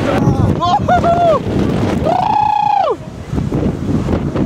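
A hurricane-force storm gust buffeting the microphone with a heavy, rumbling noise. People give short shouts about half a second in, then one long held yell about two seconds in.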